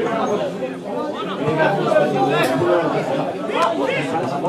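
Several spectators' voices chattering and calling out over one another at the touchline of a football match, with a louder shout about two and a half seconds in and another near the end.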